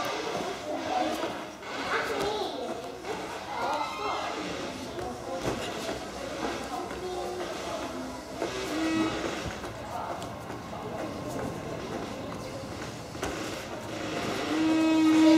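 Indistinct voices chattering in a large, echoing hall, with a few faint knocks.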